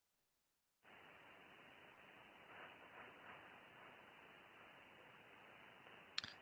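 Faint, even receiver hiss from a 6-metre band radio's audio, cut off sharply above about 3 kHz. It comes in suddenly about a second in, with a few slightly louder swells around two to three seconds in.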